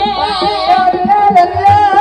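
Traditional Banyumas ebeg dance accompaniment: a high, wavering sung vocal line with vibrato over a steady beat of hand drums and struck percussion.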